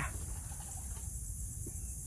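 Steady, high-pitched insect chorus, droning on without a break.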